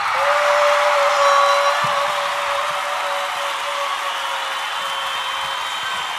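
Roller coaster riders screaming together, with one high scream held steady for about five seconds over the crowd noise. It cuts in and out abruptly.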